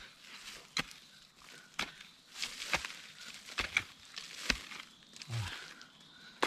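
Digging hoe chopping into stony soil around a spring bamboo shoot, six sharp strikes about a second apart, each followed by the crunch of loosened earth and grit.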